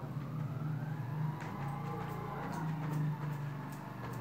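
A steady low motor drone, with a faint tone gliding up and down above it and a few light clicks.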